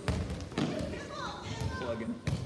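Rubber playground balls thrown and bouncing on a hard hall floor, several separate thuds, with children's voices in a large, echoing room.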